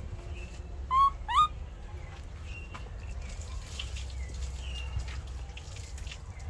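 Baby macaque giving two short, high-pitched squeaking calls about a second in, the second sliding upward in pitch. Fainter chirps follow later.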